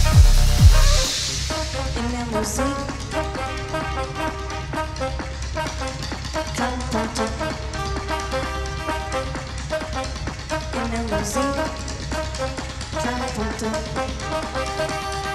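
Live big band music mixing techno and jazz: a heavy techno kick drum thumps for about the first second and then drops out, leaving the brass section, trombones among them, playing short repeated chords over a steady low bass.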